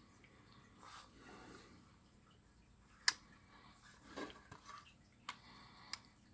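Faint handling of a precision screwdriver bit case: a few sharp, small clicks and light scuffs of hard plastic and metal, the loudest click a little after three seconds in and two more near the end.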